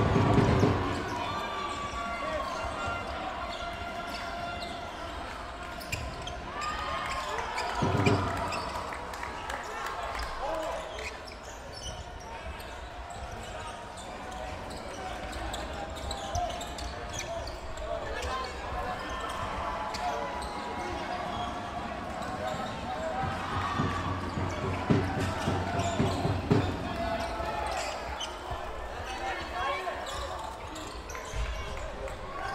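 Dodgeball game sounds in a large sports hall: players' indistinct shouts and calls, with cloth-covered dodgeballs hitting the wooden court floor several times, near the start, about eight seconds in and in a cluster past the middle.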